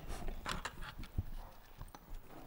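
Handling noise close to a microphone: a few irregular soft knocks and clicks.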